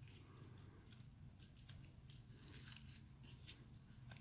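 Near silence, with a few faint, scattered ticks and rustles of cardstock pieces being handled.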